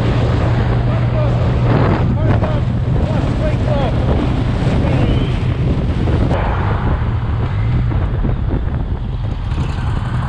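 Motorcycle engine running at a steady road speed, a constant low hum under heavy wind rush buffeting the rider's camera microphone.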